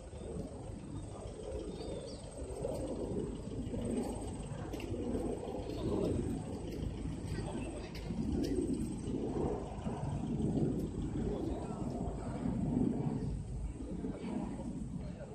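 Indistinct voices of several people talking outdoors, under a steady low rumble.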